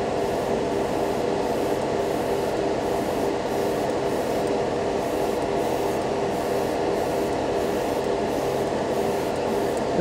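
Airbrush spraying thinned silver lacquer, a steady hiss of air and paint, over the constant hum of a spray booth's extraction fan.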